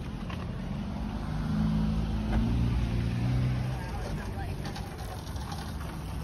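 A car engine running as it drives past close by in a parking lot, swelling to its loudest about two to three seconds in and then fading.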